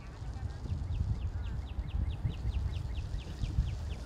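Wind rumbling on the microphone, with a rapid run of short, high chirps, about five a second, typical of a bird, from about a second in to near the end.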